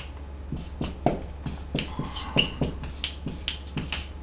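Dry-erase marker writing on a whiteboard: a quick run of short pen strokes and taps, some with brief high squeaks.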